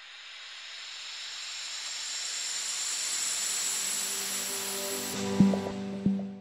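Logo intro sting: a hissing swell that rises steadily for about five seconds, then a short hit with a low ringing tone near the end.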